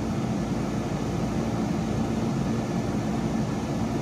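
Steady mechanical hum and noise with a low drone, like a fan or air conditioner running, unchanging throughout.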